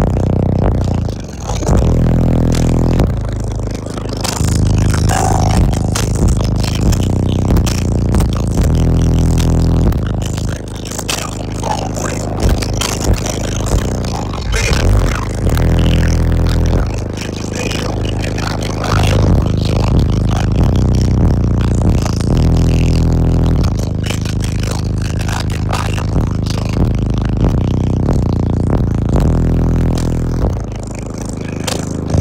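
Six 18-inch subwoofers playing bass-heavy music at very high volume, heard inside the vehicle, with deep bass notes that change every second or two. A constant rattling buzz sits over the bass.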